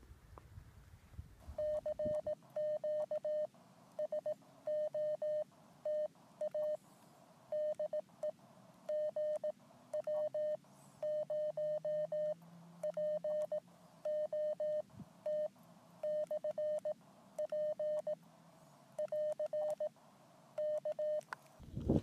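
Morse code (CW) from an amateur radio transceiver: a single steady beep keyed on and off in dots and dashes, at a brisk sending speed. It starts about a second and a half in and stops just before the end.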